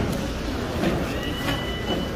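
Busy fish-market floor noise: a steady low rumble with scattered knocks. A little over a second in, a steady high-pitched whine at two fixed pitches begins and holds.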